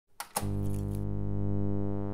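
Intro music sting: two sharp mechanical clicks in quick succession, then a sustained low synthesizer chord that holds and slowly fades.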